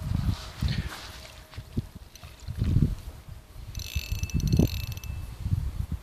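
A fishing reel clicking rapidly for about a second near the middle while a hooked fish is being brought in to the landing net, over low thumps of handling noise.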